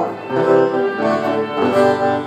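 Live acoustic guitar and violin playing held chords and notes, the band's backing between lines of a spoken-word poem.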